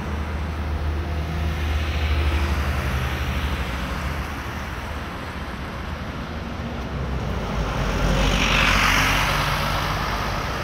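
Road traffic: a steady low engine rumble, with a vehicle passing close near the end, its engine and tyre noise swelling and then fading.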